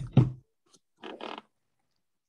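Video-call audio: the end of a person's sentence, then a short, soft voice sound about a second in, and otherwise dead silence where the call cuts out background noise.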